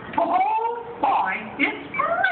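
A person's voice making drawn-out sounds without clear words, gliding up and down in pitch.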